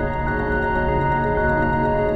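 Ambient electronic music: layered, sustained drone tones held steady, with no beat.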